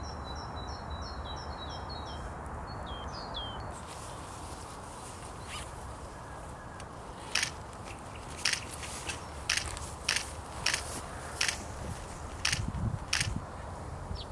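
Outdoor garden ambience with a steady background hiss. In the first few seconds a small bird chirps a quick run of short repeated high notes, then a couple of falling ones. From about halfway on, sharp camera-shutter clicks come roughly once a second, eight in all.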